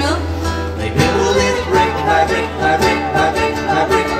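Two acoustic guitars playing a plucked passage together, amplified live.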